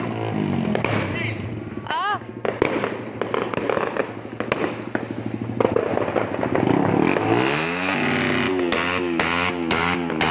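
Fireworks going off in a fast run of sharp crackling pops through the middle, with a short whistling sweep about two seconds in, over background music that comes up strongly near the end.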